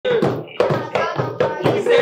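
Rhythmic hand percussion, sharp slaps or claps a little under half a second apart, with young voices over it.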